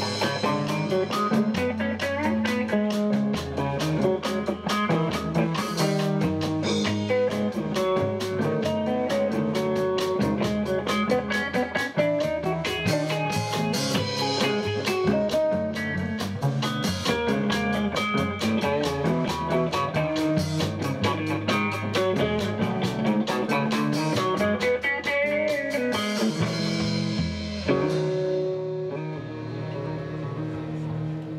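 Live rock band playing an instrumental passage, electric guitar over bass and drums. Near the end the drums stop and a final chord rings out as the song closes.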